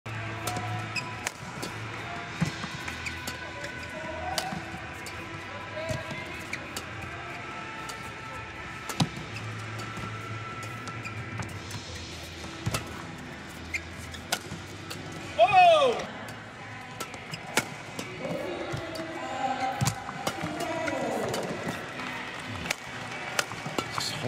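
Badminton rally: a quick run of sharp racket strikes on the shuttlecock over a steady arena hum. A little past halfway there is one loud, high, falling squeak, typical of a shoe sole on the court mat. Crowd voices rise near the end as the point is won.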